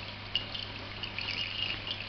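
Distillate running from a reflux still's condenser outlet into a glass jug of collected spirit, a light trickle with small drips, over a faint steady low hum.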